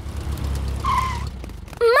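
Cartoon car engine sound effect: a low hum as the car drives up, with a brief squeal about a second in as it pulls up. The engine sound fades away just before a child's shout near the end.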